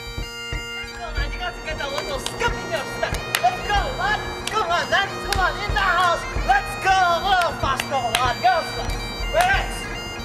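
Bagpipe music on the soundtrack: a steady drone under a fast, heavily ornamented chanter melody. It starts thin for about the first second, then plays on at full strength.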